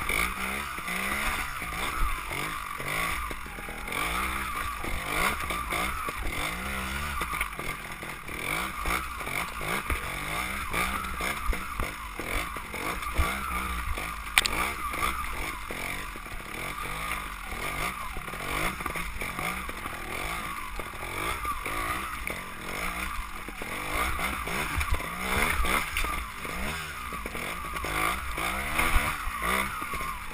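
Trials motorcycle engine running at low revs, the pitch rising and falling in short blips of the throttle as the bike picks its way down a rocky section, with wind rumble on the microphone.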